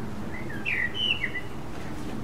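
Common blackbird singing one short phrase of fluty, gliding whistled notes about half a second in, lasting about a second.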